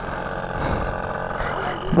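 Small petrol engine of a kids' mini dirt bike (pocket bike) running steadily under throttle as the bike pulls away, with plenty of punch and no longer stalling.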